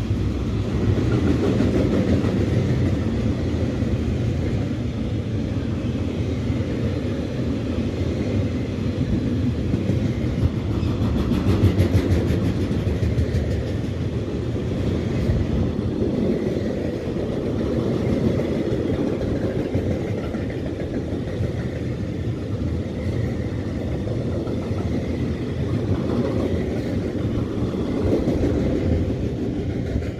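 A long freight train of double-deck car-carrier wagons loaded with new cars rolling past on the rails: a steady, loud rumble of wheels and wagons.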